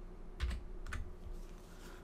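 Two computer keyboard keystrokes about half a second apart, as code is pasted into an editor.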